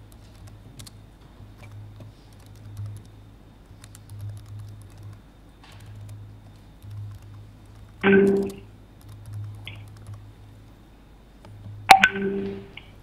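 An open conference audio line with a low steady hum and faint scattered clicking, with no voice coming through: the remote speaker who has been given the floor is not heard. About eight seconds in, one short, loud pitched sound cuts in.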